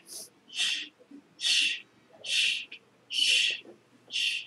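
A run of short, sharp hissed 'shh' breaths, evenly spaced at about one a second, the kind of hissing exhalation made with each move while performing a karate form.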